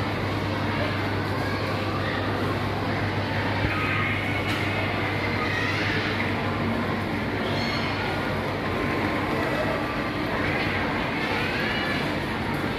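Steady background din of a busy supermarket: a constant low hum under indistinct chatter from shoppers.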